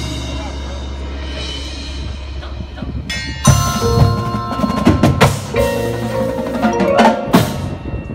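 Drum corps percussion section playing: marimbas and vibraphones ringing over a held low note, then from about three and a half seconds in, loud accented chords and hits from the mallet keyboards and drums.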